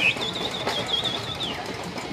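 A high whistled tone glides up, wavers up and down for over a second, then slides down and stops, over the murmur of a crowd.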